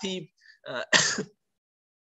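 A man's speaking voice trails off, then he clears his throat in one short, rough burst about a second in.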